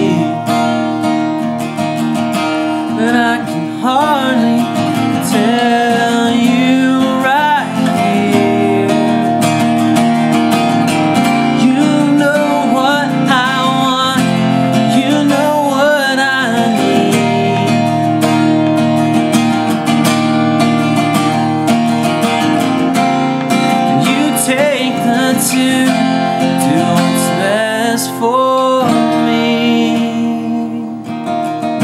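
Acoustic guitar strummed steadily, capoed at the first fret, with a man singing a slow melody over it in several phrases.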